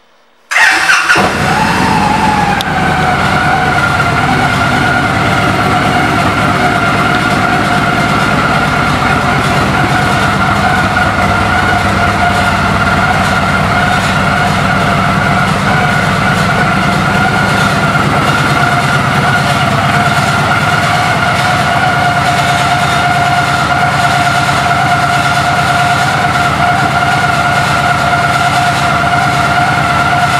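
Victory Magnum's V-twin motorcycle engine cranking and catching about half a second in, the pitch dropping as it settles into a steady idle with a loud, even low beat. A steady high whine sits over the idle.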